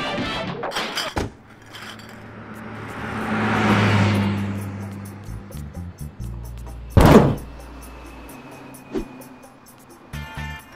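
Background music, with a car sound effect swelling and fading in the middle as a LEGO car pulls up. About seven seconds in comes one loud thunk, a door, and a smaller knock near the end.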